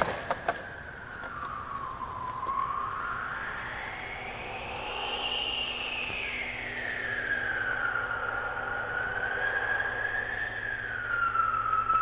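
An emergency-vehicle siren on a slow wail, a single tone sliding down, then up and down again over several seconds, above a low steady city hum. A couple of sharp clicks sound right at the start.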